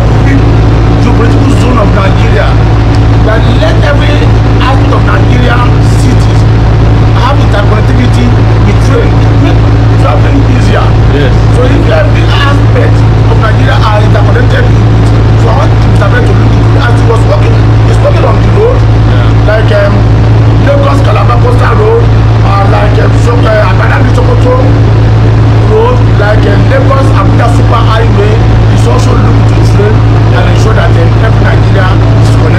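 A man talks over a loud, steady low hum from the onboard equipment of a light-rail metro car standing at the station.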